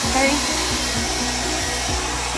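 Handheld hair dryer blowing steadily on wet hair, a constant rushing of air.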